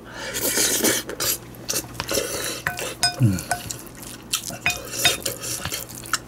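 Wooden spoon stirring and scraping sauced rice in a glass bowl, with repeated scrapes and clicks. Several times the spoon knocks the side of the glass bowl, which rings briefly.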